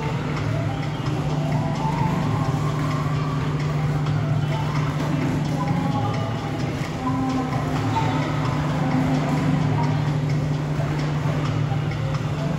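Busy indoor ambience: background music with indistinct voices and a steady low hum.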